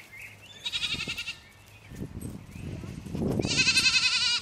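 A goat bleating twice: a short, high, quavering call about half a second in, then a louder, longer one near the end.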